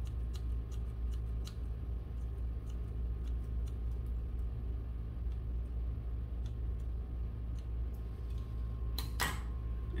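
Hair scissors point-cutting the ends of bangs: a quick run of light snipping clicks, then sparser single snips, over a steady low hum. About nine seconds in, a short, louder rush of noise.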